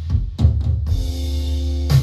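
A live band recorded with a Neumann KU-100 dummy-head microphone: a quick run of drum hits in the first second, then a held keyboard chord over a steady low bass note, with another loud drum and cymbal hit just before the end.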